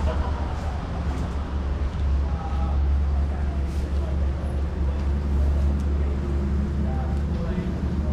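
A steady low rumble with faint voices of people talking in the background.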